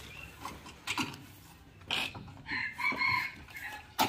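A chicken calling in the background: one short call a little after the middle, with a few light knocks around it.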